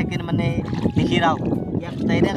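A young man talking in Assamese, with a steady low rumble of wind on the microphone.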